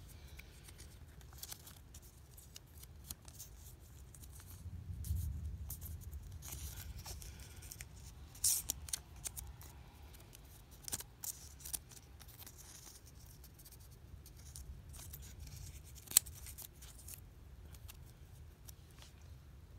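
Clear plastic stamp protector being handled as a stamp is worked into it: faint rustles with scattered crisp clicks, the sharpest one near the end.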